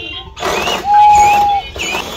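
A toy whistle blown in one steady, single-pitched note lasting under a second, about a second in.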